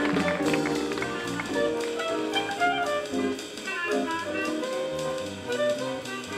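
Small jazz ensemble playing live, a clarinet carrying a moving melodic line over bass and the rest of the band.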